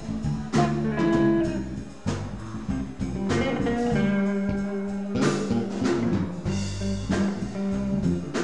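Blues band playing an instrumental passage: guitar playing held notes over a drum kit, with several drum hits through the passage.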